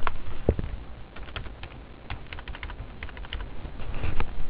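Computer keyboard typing: a quick run of keystrokes, starting about a second in and lasting about two seconds.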